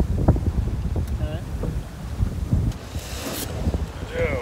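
Wind buffeting a phone's microphone on deck of a sailing yacht under way at sea, an uneven low rumble over the rush of water, with a brief hiss about three seconds in.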